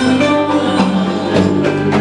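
Live band playing an instrumental stretch of Middle Eastern-style folk music with hand percussion, between sung lines.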